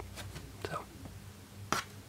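A soft vinyl toy figure set down on a tabletop, giving one short, light tap near the end.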